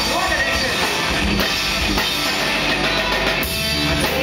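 A rock band playing live: electric guitar and a drum kit, with the singer's voice near the start.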